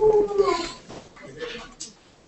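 A person's voice giving a drawn-out call, about half a second long, that slides down in pitch. Quieter voices follow.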